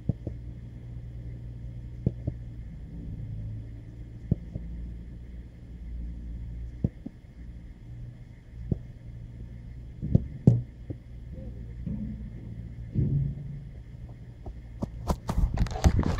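Steady low wind rumble on the microphone, broken by a scattered handful of short sharp knocks. Loud handling noise near the end as the camera is picked up.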